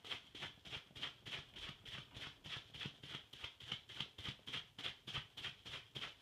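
Hand in a plastic food handler's glove rapidly patting wet leather filler compound on a leather sofa to emboss a texture into it: a faint, even patter of about five dabs a second.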